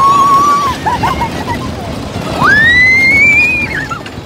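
A young girl screaming on a roller coaster: one long high scream at the start, a few short yelps, then a second, higher scream that rises and is held for over a second. Underneath is the steady rumble and rush of the moving coaster train.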